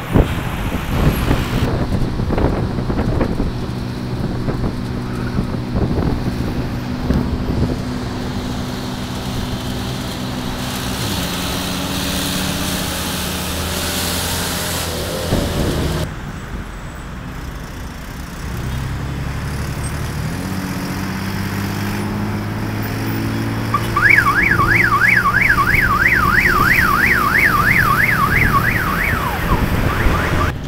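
Bus engine running as it pulls through city traffic, its pitch stepping up and down with gear changes. About two-thirds of the way in, an electronic siren warbles rapidly, about three rises a second, for some five seconds, and is the loudest sound.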